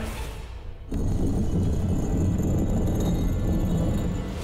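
Dramatic background score. A quiet musical phrase gives way, about a second in, to a loud, steady low rumble with faint high sustained tones.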